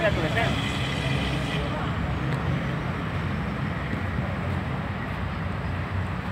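Outdoor pitch-side ambience: a steady low rumble under distant, indistinct voices of players, with a brief raised call about half a second in.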